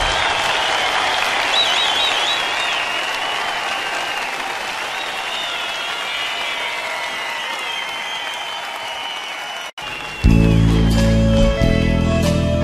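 A concert audience applauding, with whistling above it, slowly dying down after a song ends. Shortly before the end the sound cuts off abruptly and the band starts the next song.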